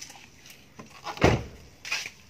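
A Nissan X-Trail's car door being shut: one loud, sudden thud a little over a second in, followed by a smaller sharp knock near the end.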